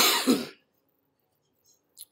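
A man coughing once: a sharp hack with a short second pulse just after, lasting about half a second.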